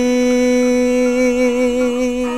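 A man's voice holding one long sung note with a light vibrato, over a karaoke backing track.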